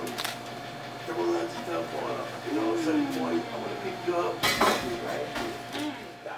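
Room sound of a busy bakery: faint background talking with light clinks of plates and cutlery. There is a short, louder burst of noise about four and a half seconds in.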